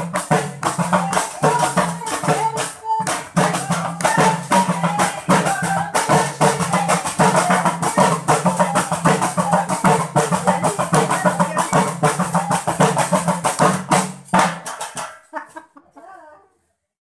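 Women singing a traditional Moroccan wedding song with fast, rhythmic handclapping and hand percussion. It stops about a second and a half before the end.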